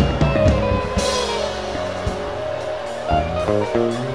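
Church worship band playing: held chords over bass with drum strokes, an instrumental bed with no voice.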